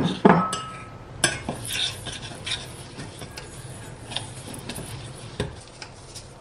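Metal spoon stirring a thick chocolate spread and crushed biscuit mixture in a stainless steel saucepan, scraping and clinking against the pan. There are two loud knocks of metal on the pan right at the start, then lighter scattered clinks.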